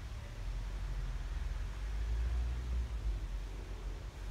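Low, steady rumble of wind on the microphone, with a faint hiss.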